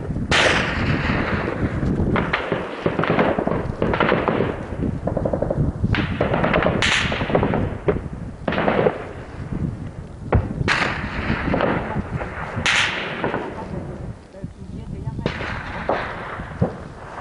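Gunfire and shell explosions in combat on a hillside: about ten heavy reports spread over the span, each trailing off in a long rolling echo, with sharper cracks between them.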